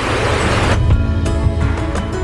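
Rushing water of a mountain stream for under a second, cut off suddenly by background music with soft instrumental notes and a low pulse.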